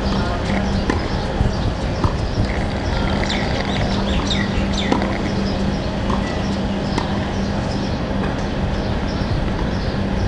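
Outdoor ambience of a watching crowd: indistinct chatter, birds chirping and a few sharp knocks, over a low hum that comes and goes.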